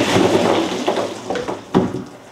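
Ice water poured from a plastic tub over a person's head: a sudden splash and rush of water and ice that dies away over about a second and a half, with a short thump near the end.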